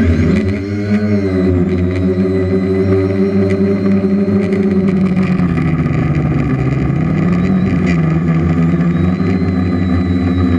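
Onboard sound of a DJI F450 quadcopter's electric motors and propellers whirring as it lifts off from the grass and flies. The pitch swings up and down about a second in, then holds fairly steady, dipping slightly midway.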